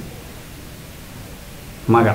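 Steady background hiss in a pause between a man's sentences, with his voice starting again right at the end.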